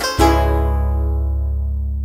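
Final chord of a song on plucked strings and bass, struck once a moment after the start, then left to ring and slowly fade.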